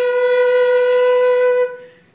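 Flute and violin duet holding one long, steady note for about a second and a half, then stopping near the end for a brief pause before the next phrase.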